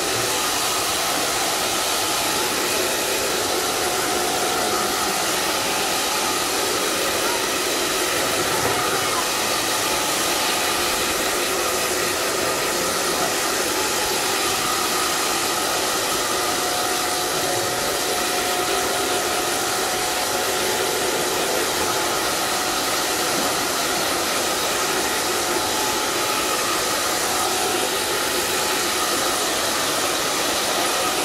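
Hand-held hair dryer running steadily, blowing air through damp hair as it is dried and styled by hand.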